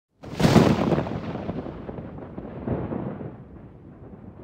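Cinematic boom sound effect for an animated logo intro: a sudden loud impact with a long fading tail, then a second, softer swell about two and a half seconds in.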